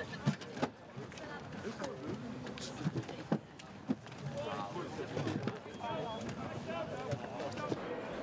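Volunteers running with ballot boxes and handing them along a line, with several sharp knocks and thumps of the boxes and people's voices calling and chattering.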